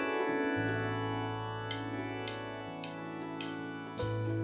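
A live band's instrumental intro: a synthesizer keyboard holds sustained chords, with light percussive ticks about every half second joining in from about the middle.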